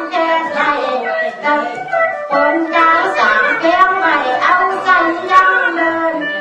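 Tai Lue khap singing: one voice singing a drawn-out, wavering melody over instrumental accompaniment.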